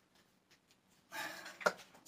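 Soft rustling, then a single short knock about a second and a half in, as hex dumbbells are picked up off the floor.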